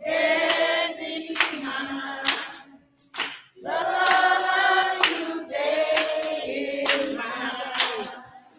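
A women's gospel praise team singing in harmony, with a steady percussion beat about once a second. The singing breaks off briefly about three seconds in.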